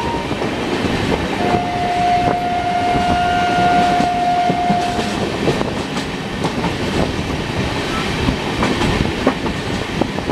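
Loud rolling noise and wheel clatter of an express train, heard from an open coach door while another train runs alongside on the next track. A single long train horn sounds about a second and a half in and holds steady for about three and a half seconds.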